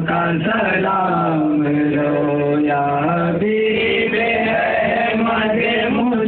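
A man's voice chanting a devotional melody in long held notes, the pitch stepping up about three and a half seconds in.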